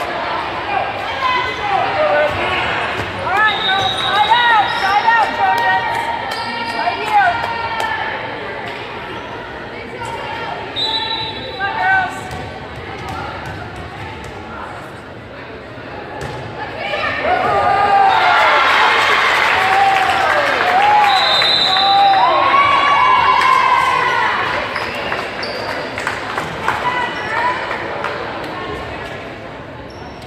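Indoor volleyball play in an echoing gym: the ball being struck and landing on the hardwood, with players and spectators shouting and cheering over it. The voices grow loudest for several seconds a little past the middle.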